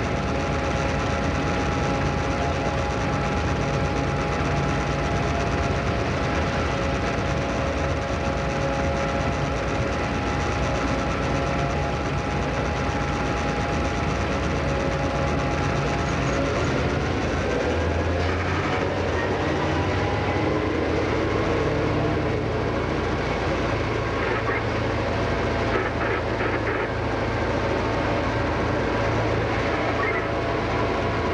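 Cab sound of the X-class diesel-electric locomotive X31 running along the track: a steady drone with several held tones that rise in pitch a little past halfway, as the locomotive picks up.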